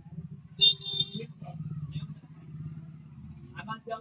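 A motor vehicle's engine running steadily, with a short horn toot about half a second in.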